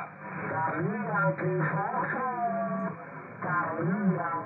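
An amateur radio operator's voice received over the air and played through a Malachite DSP SDR receiver. The speech is narrow and thin, with nothing above the receiver's voice filter, and has short pauses, one of them near the start and another about three seconds in.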